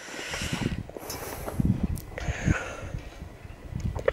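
A metal field gate being handled and swung shut, with rustling and irregular low knocks and a light click about two seconds in.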